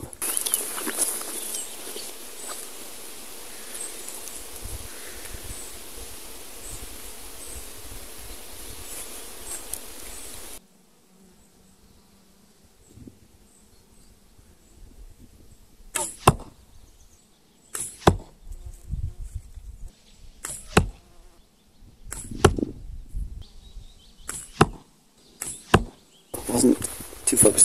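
Longbow shots at a target. A steady hiss cuts off suddenly about ten seconds in, then comes a string of sharp snaps roughly every two seconds as arrows are loosed and strike the target.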